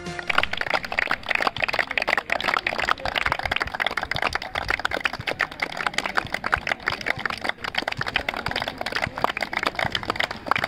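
A group of people clapping by hand, steady and irregular, like a line of players applauding.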